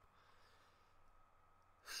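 Near silence: faint steady hiss of room tone, with a man's voice starting right at the end.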